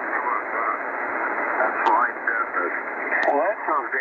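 Single-sideband amateur radio voice traffic on the 75/80-metre band, received in lower sideband on a Tecsun PL-880 shortwave receiver and heard through its speaker. Narrow, muffled voices sound over a steady hiss of band noise, with two sharp clicks partway through.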